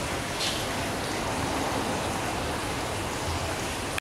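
Steady rushing noise of running water, even and unbroken.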